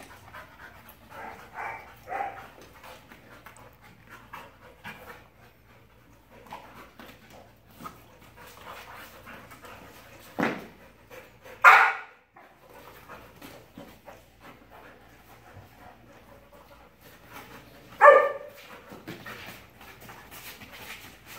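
Two dogs at play, panting, with a few short loud barks: two close together about halfway through and one near the end.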